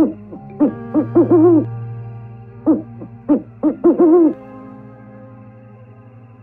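An owl calling: a run of short hoots that rise and fall in pitch, in two bursts, the first about half a second in and the second around three seconds in, over faint steady background tones.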